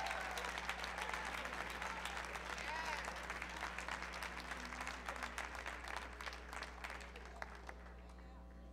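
Theatre audience applauding, the clapping thinning out and dying away toward the end, with a short call from the crowd about three seconds in.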